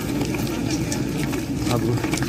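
A steady, low engine-like hum, as from an idling motor, with people's voices mixed in.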